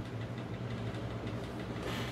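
A steady low hum, like a small motor or an electrical hum, with no distinct knocks or clicks.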